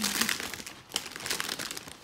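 Clear plastic bag crinkling as it is handled, in two spells of rustling with a brief lull and a sharp crackle just under a second in.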